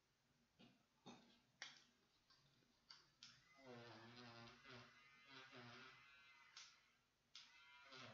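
Near silence, broken by a handful of faint sharp clicks in the first few seconds and again near the end, and by a faint voice for about two seconds in the middle.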